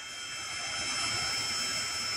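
Uaoaii 21V cordless heat gun running, its fan blowing a steady rush of hot air with a thin high whine as it shrinks heat-shrink tubing.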